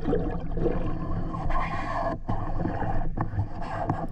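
Muffled underwater noise picked up through a camera housing: water rushing and moving around the gear during the struggle with a speared mahi mahi, over a steady low hum. The rushing swells in the middle and drops out briefly twice.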